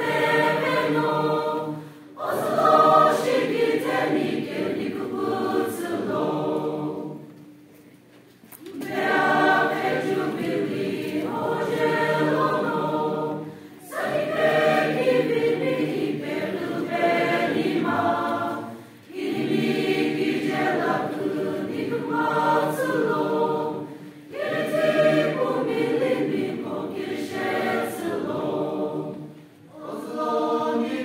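Mixed choir of men's and women's voices singing a hymn, in phrases of about five seconds separated by short breath pauses, the longest pause about eight seconds in.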